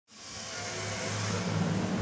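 Heavy machine engine running steadily with a low hum, fading in from silence and slowly growing louder.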